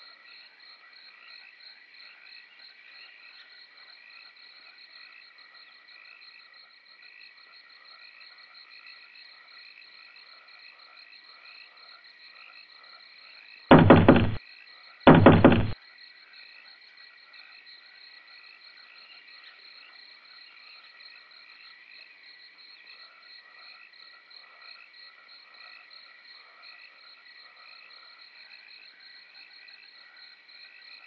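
A steady night chorus of frogs and insects, with fast even pulsing calls at two pitches. In the middle come two loud knocks, about a second and a half apart.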